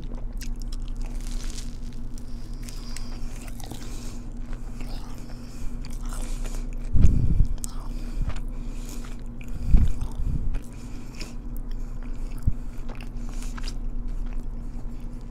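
Close-miked chewing and crunching of a Korean corn dog's crispy coating, with many small crackles and mouth clicks. Two dull low thumps, about seven and ten seconds in, are the loudest sounds. A low steady hum runs underneath.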